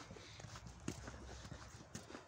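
Faint footsteps of a person walking on a thin layer of snow over a paved path: a run of soft, irregular steps.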